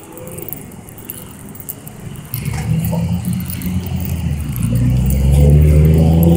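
A motor vehicle's engine approaching on the street, growing steadily louder from about two seconds in.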